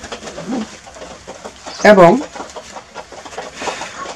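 Domestic pigeons cooing in the loft, quieter than the talk around it, with one short spoken word about two seconds in.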